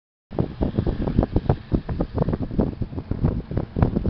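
Wind buffeting the camera microphone in irregular low gusts and thumps, from a car in motion.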